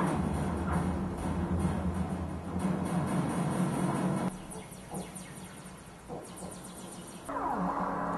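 Modular synthesizer drone: steady low tones with a rapid flutter, falling away about four seconds in and swelling back up shortly before the end.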